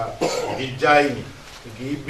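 A man clearing his throat and coughing in three short bursts.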